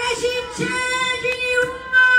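A woman's voice singing one long, high, steady note.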